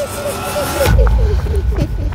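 Dramatic sound-design effect: a rapid train of short warbling chirps over a hissing wash. The hiss cuts off about a second in, leaving a heavy low rumble while the chirps die away.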